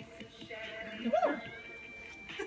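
A short vocal cry, rising and then falling in pitch, about a second in, over steady outdoor background noise as a climber tops out on a sandstone boulder.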